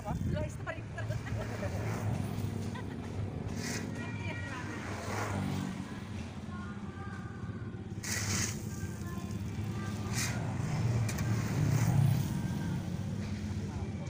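Steel shovel scraping and crunching into a heap of coarse gravel a few times, over the steady hum of road traffic, with a vehicle swelling loudest near the end.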